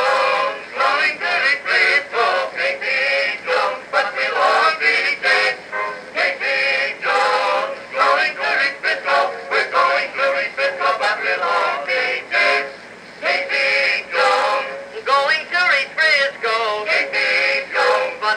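Edison Amberola 30 cylinder phonograph playing a 1912 Blue Amberol cylinder: an early acoustic recording of male voices singing with musical accompaniment, thin in tone with no high treble.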